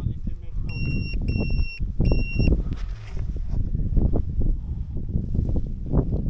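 Three short electronic beeps at one steady high pitch, one after another, starting about a second in. Under them, low rumbling wind noise and handling on the microphone.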